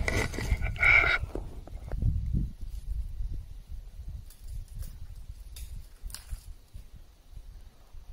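Handling noise as the camera is set down in the snow for the first two seconds or so, then faint, spaced crunches of snowshoes tramping away through deep powder, over a low steady rumble.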